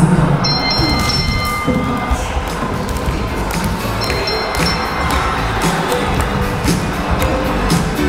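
Background music with frequent percussive hits.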